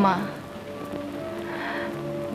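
A woman's spoken word ends in a falling pitch at the start, then soft background film score of held sustained notes that change pitch a couple of times, over a steady hiss.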